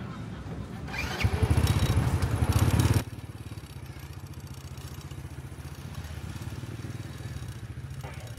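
Motorbike engines running close by, loud for about two seconds and stopping abruptly about three seconds in, then a quieter, steady engine hum.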